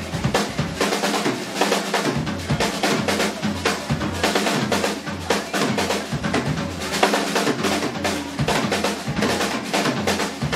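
Rock drum kit played fast and busy, Paiste 2002 bronze cymbals crashing and washing over dense bass drum, snare and tom strokes.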